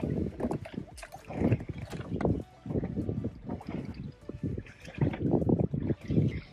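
Wind buffeting the microphone in uneven low gusts.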